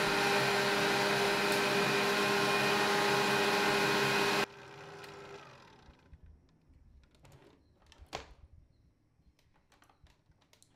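Electric stand mixer running at a steady speed, its wire whisk beating a butter, sugar and egg mixture in a stainless steel bowl; it is switched off about four and a half seconds in and the motor winds down. After that, only a few faint clicks and a knock.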